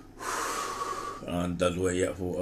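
A man takes a loud, rushing breath lasting about a second, then starts to speak.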